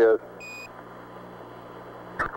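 Apollo mission air-to-ground radio: a short single beep about half a second in, the Quindar tone that marks the end of a ground transmission, over steady radio hiss and hum.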